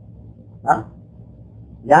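Speech only: a man's voice giving a talk, with one short spoken syllable about two-thirds of a second in, a pause with faint background hum, then talk resuming near the end.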